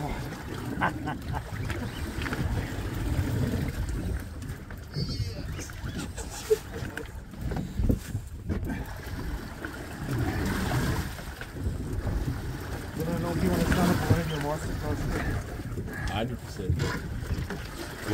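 Boat at sea with wind gusting on the microphone, and indistinct voices now and then.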